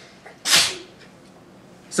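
A man's single short, sharp sniff or snort-like breath through the nose, about half a second in.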